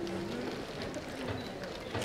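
Murmur of many voices in an auditorium, with scattered footstep clicks on a hard floor.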